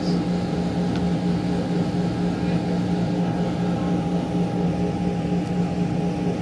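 Steady low mechanical hum with a fainter higher whine, over a constant wash of noise.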